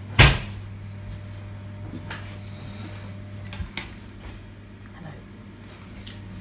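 A kitchen cupboard door shutting with one sharp knock just after the start, followed by a few faint clicks and knocks of kitchen handling over a steady low hum.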